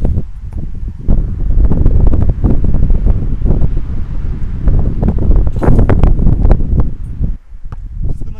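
Strong wind buffeting the camera's microphone: a loud, low rumble that surges in irregular gusts and drops away briefly near the end.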